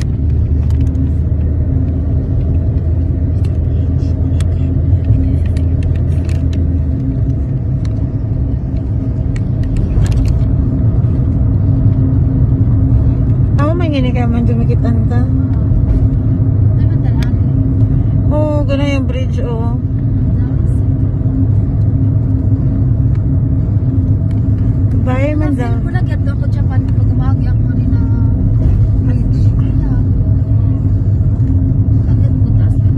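Steady rumble of a car's engine and tyres on the road, heard from inside the moving car. A voice rises and falls briefly three times over it.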